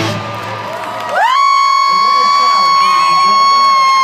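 Stadium crowd cheering. About a second in, a long, high whoop rises, is held at one pitch for nearly three seconds, and drops away.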